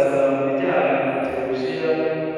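Voices singing a church hymn together, on long held notes.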